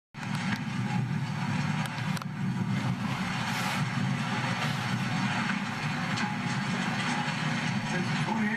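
John Deere 880 self-propelled swather running steadily as it cuts hay, a continuous low mechanical drone. A few faint clicks in the first two seconds.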